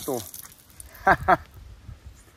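A man's voice: the end of a spoken word trailing off at the start, then two short voiced sounds about a second in, with only faint low background between.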